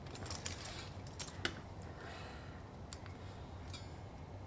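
A few faint, scattered metallic clicks and rattles of an air-hose chuck being handled and fitted onto the Schrader valve stem of a motorcycle wheel, just before inflation.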